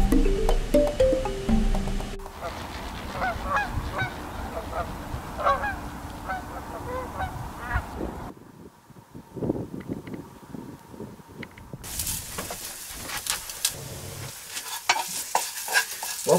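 Background music ends about two seconds in, followed by a series of short bird calls lasting several seconds. In the last few seconds, food sizzles and crackles frying in a pan.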